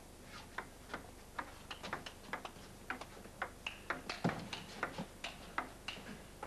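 A table tennis rally: the celluloid ball is struck by the bats and bounces on the table, giving a quick run of sharp clicks, about three or four a second.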